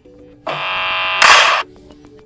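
Audio of a TikTok video ad starting on the phone: a loud, buzzy tone lasting about a second that ends in a burst of noise. Faint background music runs underneath.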